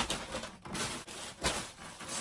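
Shopping bags rustling and dropping onto a bed, with a soft thump about one and a half seconds in as one lands.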